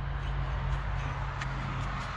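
Honda GX390 single-cylinder four-stroke engine running steadily, a low even hum. A couple of faint clicks come as its air-cleaner cover is handled.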